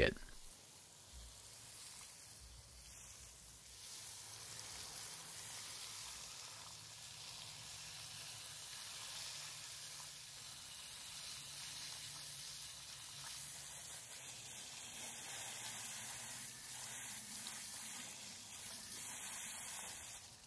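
Garden hose spraying water onto an edger's oily metal engine deck, rinsing off degreaser: a faint, steady hiss of water spattering.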